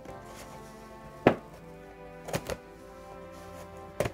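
Scissors snipping the tape on a cardboard toy box: one sharp snip about a second in, then two lighter ones close together about halfway through, over soft background music.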